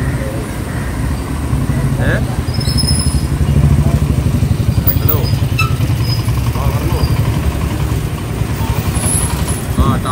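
Truck engine idling with a steady low rumble, a little louder for a few seconds near the start.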